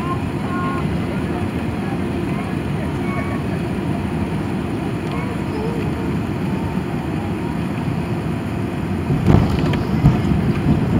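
Steady cabin noise of an Airbus A380 taxiing on the ground: an even low hum and rumble from the engines and rolling gear, with faint passenger voices in the cabin. A louder rumble swells near the end.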